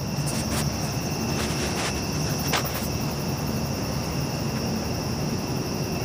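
Crickets trilling steadily in two high, unbroken tones over a low steady rumble, with a few brief clicks in the first few seconds.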